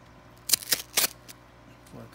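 Cardboard-and-plastic Yu-Gi-Oh! card blister pack being handled: two short crackling rustles of the packaging, about half a second and a second in.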